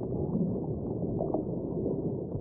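Low, muffled, steady rumble of a channel-intro sound effect, with nothing in the upper range.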